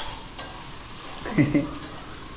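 Food frying and sizzling in a wok on a gas stove while it is stirred with a metal slotted spoon, with a few light clicks of the spoon. A brief voice-like sound about one and a half seconds in.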